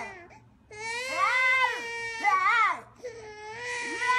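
Baby crying in two long wails that rise and fall in pitch, with a short gap between them.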